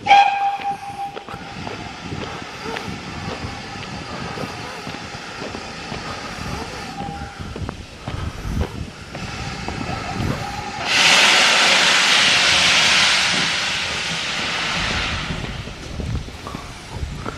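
Steam locomotive giving a short whistle, its tone lingering faintly for a few seconds. About eleven seconds in, a loud hiss of escaping steam starts suddenly, holds for about three seconds, then eases off and stops near the end.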